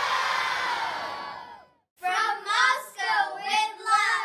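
A large crowd of children cheering and shouting together, fading out in the first couple of seconds. After a brief silence, a few children shout excitedly together in high voices.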